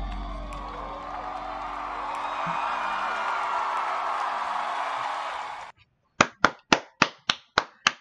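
Dance-performance music with a cheering audience, cut off suddenly a little under six seconds in. Then one person claps her hands in a steady run of sharp claps, about three a second.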